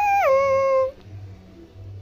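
A humming voice holds the last note of a short logo jingle. About a quarter second in it slides down to a lower note, holds it, and stops just before a second in.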